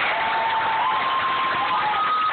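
Large concert audience applauding and cheering in a big hall. Over the crowd noise runs one long, high held tone that steps up in pitch about a second in.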